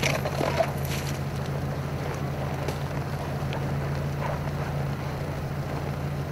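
Steady low hum of an idling vehicle engine, with a few faint scrapes and crunches of ice near the start.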